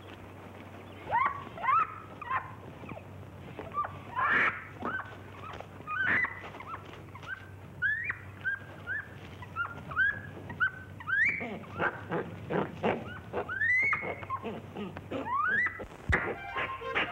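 Chimpanzee calling: a long string of short, rising squeaks and hoots that starts about a second in and comes faster and busier near the end.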